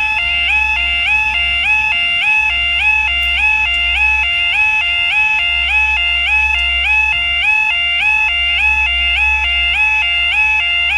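Level crossing warning alarm sounding the two-tone yodel, stepping between a low and a high pitch about twice a second.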